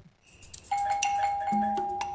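Doorbell chime ringing as the button is pressed: a single clear tone sets in just under a second in and rings on steadily.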